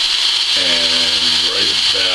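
Servo motor driving the bed of a scratch-built RC rollback truck, making a steady high-pitched whine with a hiss, while the bed runs back in.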